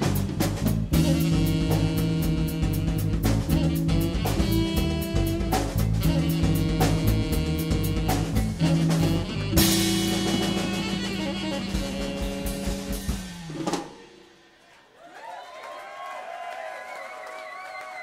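Live trio of tenor saxophone, bass and drum kit playing a funk-jazz groove, with a crash about halfway in and a held closing chord that ends the tune about 13 to 14 seconds in. Near the end, audience cheering, whooping and applause.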